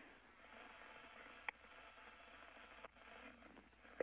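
Near silence: faint, steady hiss of a radio call link, with one short click about a second and a half in.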